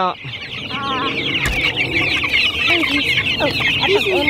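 A crowd of three-week-old chicks peeping continuously, many short high calls overlapping in a dense chorus.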